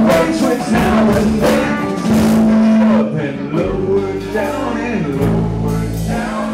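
Live blues-rock band playing, with electric guitars, an electric organ and drums. Drum hits mark the first two seconds, a long note is held about two seconds in, then sliding notes play over a bass line.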